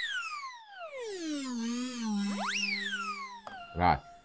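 Ableton Wavetable synth playing an MPE note whose per-note pitch bend sweeps it sharply upward and then lets it glide slowly back down, twice, a sound like a theremin. After the second sweep a low steady tone holds until a click near the end.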